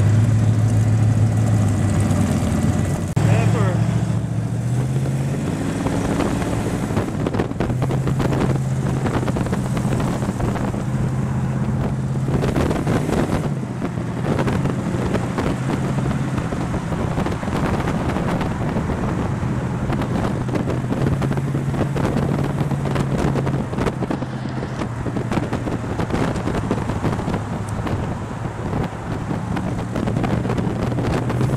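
Car engine running on the road, heard from an open-topped car with wind buffeting the microphone. The revs rise a few seconds in, drop back and then hold steady at cruising speed.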